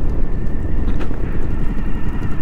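Motorcycle running along a dirt track, a steady low rumble of engine and wind noise on the on-bike microphone.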